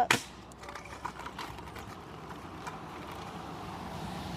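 Kick scooter wheels rolling steadily on asphalt, with a sharp knock at the start and a few light clicks.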